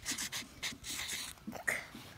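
Felt-tip marker scratching across paper in a series of short quick strokes as a word is written, with breathy sounds close by.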